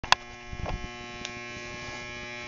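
A small camera being handled right at the microphone: a sharp click near the start, then a few soft knocks and rubs. Under it runs a steady electric buzz.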